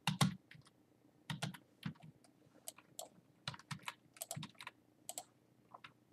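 Computer keyboard typing: irregular clusters of key presses with short pauses between them, as figures are keyed in.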